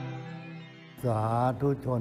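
Soft ambient music fades out. About a second in, an elderly monk's voice begins a Thai address with slow, drawn-out, intoned words.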